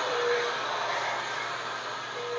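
Steady hiss and hum of operating-room equipment, with a faint, short steady tone near the start.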